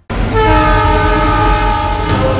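A loud, sustained horn-like chord of several held tones over a low rumble, starting abruptly after a brief silence.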